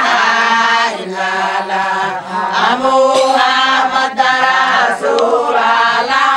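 A group of women singing an Islamic devotional chant in praise of the Prophet (salawat) together.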